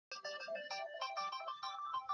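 A mobile phone's text-message alert tone: a quick electronic melody of short, changing notes.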